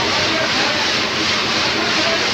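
Loud, steady machinery noise, a continuous rushing hum with no breaks, typical of factory machinery running.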